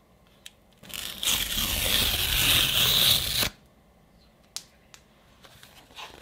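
A Redbubble mailer envelope being ripped open in one continuous tear, starting about a second in, lasting about two and a half seconds and stopping abruptly. A few faint paper-handling clicks follow.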